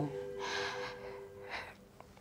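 A woman's audible breaths, not words: one longer breath about half a second in and a shorter one about a second and a half in.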